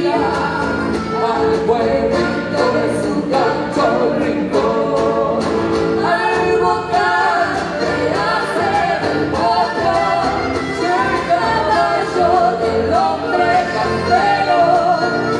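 Live gaúcho folk band playing and singing through a stage PA: vocals over accordion and guitar, with a steady percussive beat.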